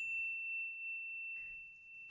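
An electronic 'correct answer' ding: one high, bell-like tone that rings on and slowly fades, marking the checked answer.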